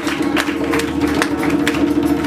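Live acoustic band music: an acoustic guitar strummed over quick, evenly spaced hand-drum strikes, with a steady held low note underneath.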